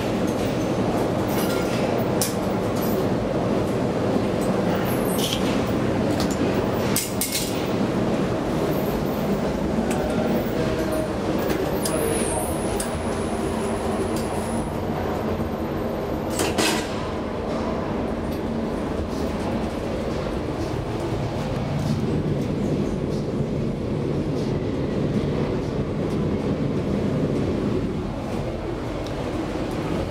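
1999 KONE inclined traction elevator running along its inclined track, heard from inside the cab: a steady, even rumble of travel with a couple of sharp clicks, about a quarter and about halfway through.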